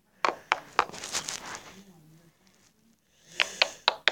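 Small hard-plastic Littlest Pet Shop figurines being handled: a few sharp clicks and a brief rustle, then another quick cluster of clicks near the end.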